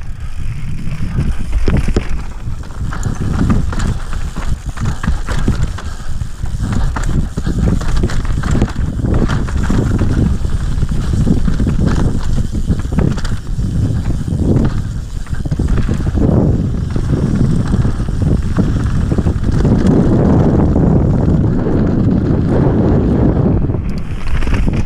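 Mountain bike ridden fast down a rough dirt and rock trail, heard from a camera on the bike or rider. Tyres run over dirt and stones, the bike knocks and rattles over bumps, and wind rumbles on the microphone. It grows louder and rougher near the end.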